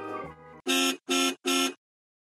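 Background music fading out, then three short, evenly spaced buzzer-like beeps in quick succession.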